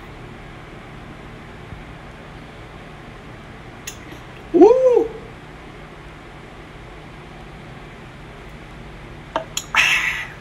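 A single short call, about half a second long, rising then falling in pitch, about halfway through, over a low steady hum. A few light clicks come near the end.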